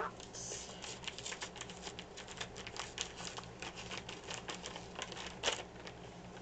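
Paper mailing envelope being torn open and its contents handled: a dense run of small paper crackles and tears, with a louder crackle near the end. A steady low electrical hum lies underneath.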